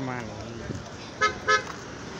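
Vehicle horn giving two short beeps about a quarter second apart, a little over a second in.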